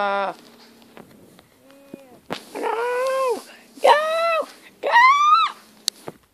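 A voice giving three drawn-out, high-pitched wailing calls about a second apart, each bending up in pitch and then falling away, after a held low hum that stops just after the start.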